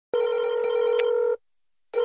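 A telephone ringing: one steady ring about a second long, a short silent pause, then the next ring starting right at the end.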